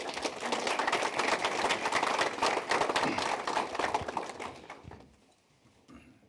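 Audience applauding, a dense patter of many hands clapping that thins out and dies away about four and a half seconds in.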